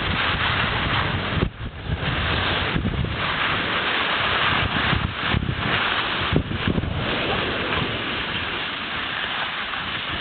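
Wind rushing over the microphone of a camera carried by a moving skier, mixed with the hiss of skis sliding on snow, with a few brief dips and faint knocks.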